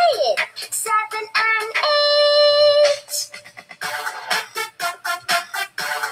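Upbeat electronic children's number song playing from a cartoon video. It opens on the end of a sung line, holds one long steady note about two seconds in, then goes into a bouncy instrumental passage of quick, even, short notes.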